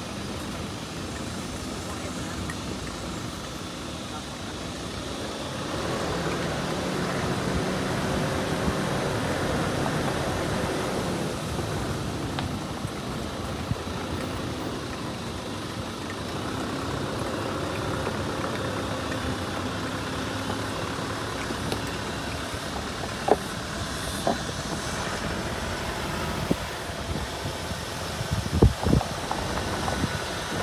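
A vehicle's engine and tyres running on a rough dirt road, heard from inside the cab, getting louder about six seconds in. A few sharp knocks come near the end.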